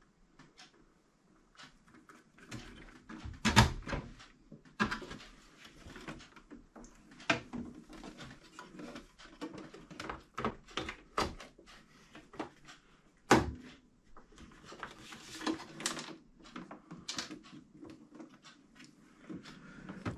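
Scattered clicks and knocks of a boiler's plastic control box and wiring being handled during installation, with a sharper knock about three and a half seconds in and another about thirteen seconds in.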